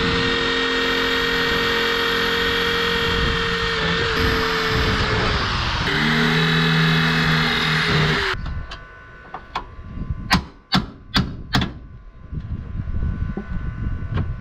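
Corded electric drill running at speed, boring into the sheet-metal edge of a truck cab; it winds down briefly near the middle, starts again at a different pitch, then stops about two-thirds of the way through. A string of sharp, irregular hammer taps on metal follows.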